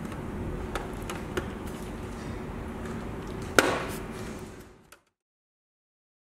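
Polycarbonate diffuser being pressed into an aluminium LED profile, with a few light clicks and one loud snap about three and a half seconds in, over a steady low hum. The sound fades out to silence about five seconds in.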